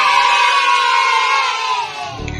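A group of children cheering together in one long, held shout that fades out near the end.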